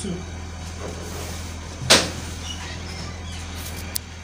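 Ankara cotton print fabric rustling as it is folded in half and smoothed on a table. A single sharp knock comes about two seconds in, over a steady low hum.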